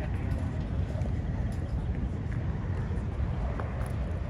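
Wind rumbling on the microphone outdoors, an uneven low buffeting, with faint voices of people chatting in the background.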